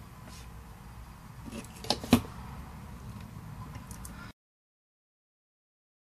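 Faint handling noise of small RC helicopter tail boom and frame parts being worked by hand, with two sharp clicks about two seconds in. The sound cuts out abruptly a little past four seconds.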